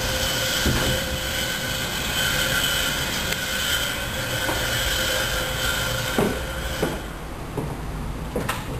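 A long, steady, high-pitched squeal of several pitches at once, which stops abruptly about seven seconds in. A few sharp knocks follow it.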